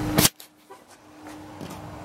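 A single sharp knock about a quarter second in, then a quiet stretch with a faint steady hum.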